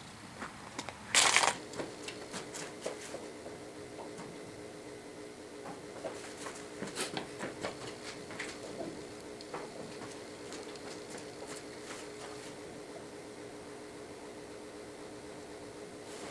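Faint scattered knocks, clicks and creaks from a loaded utility trailer as a heavy machine on a steel stand is shifted by hand, over a steady low hum. A short rushing noise about a second in.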